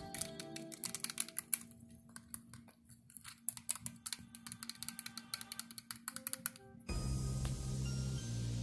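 Fingertips running over the zipper teeth of a cosplay mask's mouth, making a quick, irregular clicking rattle, with faint music under it. A louder music track cuts in about seven seconds in.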